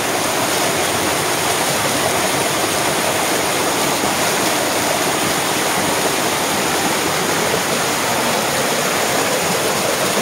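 Waterfall pouring and splashing over rock right at the microphone: a loud, steady rush of water.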